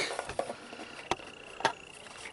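A few light clicks and taps from a hard plastic casing being handled and turned over to check whether it broke in a fall.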